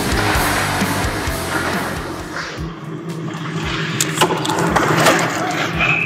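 Background rock music over ice-rink play: hockey skates scraping on the ice, with a few sharp knocks of sticks and puck about four and five seconds in as play comes to the net.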